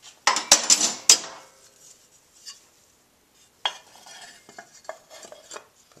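Metal parts clattering for about a second, then lighter clicks and knocks as the aluminium engine side cover over the flywheel is handled and fitted back onto the crankcase.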